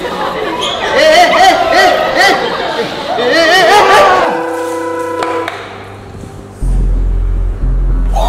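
Voices with swooping, wavering pitch over background chatter for the first half. A held musical chord follows, and a deep, heavy bass comes in near the end.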